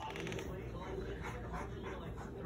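Baby babbling and squealing in short bursts of voice.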